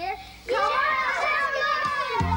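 Several children shouting together in one long call, their voices overlapping and dropping in pitch at the end.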